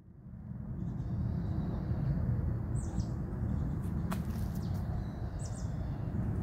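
Outdoor ambience fading in at the start: a steady low rumble with a few faint bird chirps over it.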